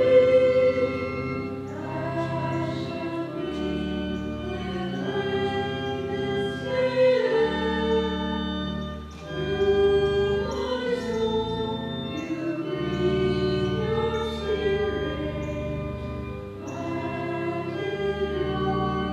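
Offertory hymn: a choir singing in slow, sustained phrases over steady held low accompaniment notes, likely an organ.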